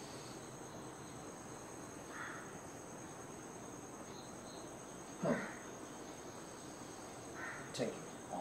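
Faint, steady high-pitched chirring of insects, typical of crickets. A single short louder sound comes about five seconds in.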